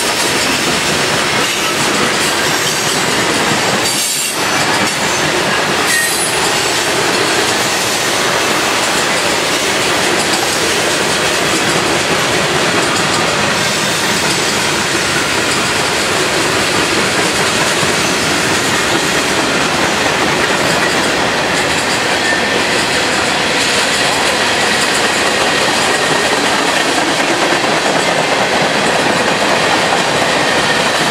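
Freight cars of a long mixed train (open hoppers, covered hoppers and tank cars) rolling past close by. There is a steady rumble and rush of steel wheels on rail, with clickety-clack over the rail joints. Now and then a faint high squeal comes from the wheels.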